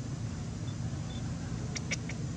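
A steady low background rumble, with three short high chirps close together near the end.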